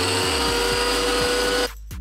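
Prowler benchtop wet tile saw running with no tile on it, its motor and blade spinning at a steady speed. The sound stops abruptly about a second and a half in.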